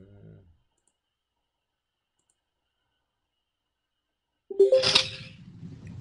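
Dead digital silence on a web-conference call while the remote audio has dropped out, after a faint low murmur at the very start. About four and a half seconds in, a sudden loud, harsh burst with a short steady tone comes through as the call audio returns.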